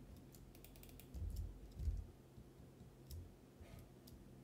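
Faint computer keyboard and mouse clicks: a scattering of light taps, with a few soft low knocks between one and two seconds in.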